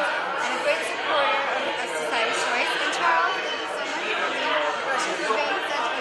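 Several voices talking at once in a busy room: indistinct crowd chatter, with no single clear speaker.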